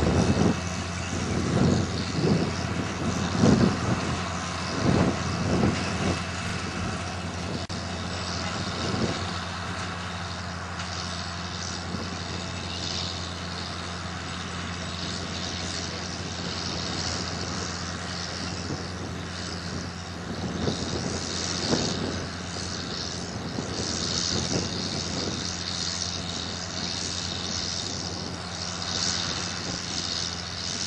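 Dewulf Mega R3000 self-propelled potato harvester at work: its diesel engine runs at a steady, even drone, with a constant hiss of machinery noise over it. Irregular low thumps come through during the first several seconds, then the sound settles.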